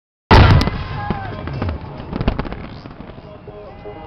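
Fireworks bursting: sharp bangs and crackling, loudest right at the start and then easing off, with further bangs about one and two seconds in.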